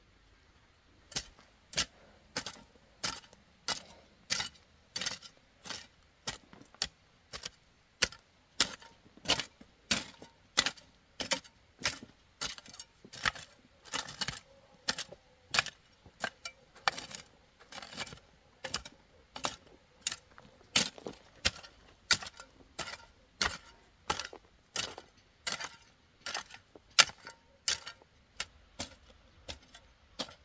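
Metal hand hoe chopping into dry, weedy field soil in steady strokes, a little under two a second, starting about a second in.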